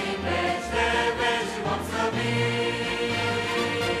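Large mixed choir singing a Romanian hymn in parts, with held low notes underneath that change pitch every second or so.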